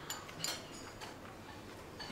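Faint clicks and light taps of chopsticks against small ceramic bowls, two of them in the first half second, over quiet room tone.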